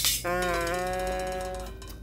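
A short noisy pop, then a steady musical tone that steps down slightly in pitch about half a second in and fades out after about a second and a half: an edited-in sound effect.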